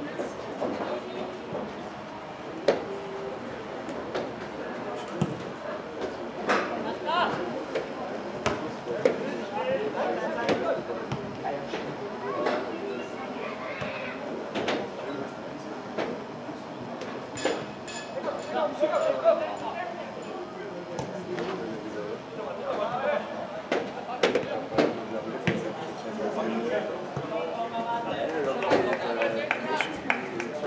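Indistinct voices in a large indoor hall, with sharp knocks scattered throughout from ball play during a team match.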